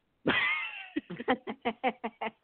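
A person laughing: a high, squeal-like cry that falls in pitch, then a quick run of short laugh pulses, about six a second.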